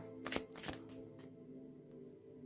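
Tarot cards handled from a deck: a few short, crisp card snaps and slides in the first second as a card is drawn and laid down.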